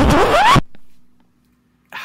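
The end of a hip-hop style intro music track, with a rising whoosh-like sweep over the beat for about half a second that cuts off abruptly. After it comes near quiet with a faint steady hum.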